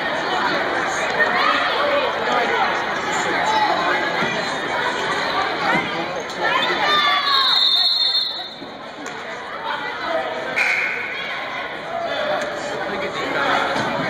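Spectators chattering in a gymnasium during a basketball game, with a short high whistle a little past halfway, after which the talk is quieter.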